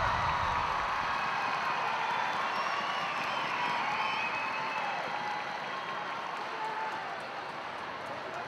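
Arena crowd applauding and cheering with a few high whoops, slowly dying down.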